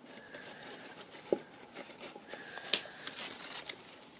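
Crepe-paper strips rustling as they are handled and taped inside a tin can, with two sharp taps, the louder one near three seconds in.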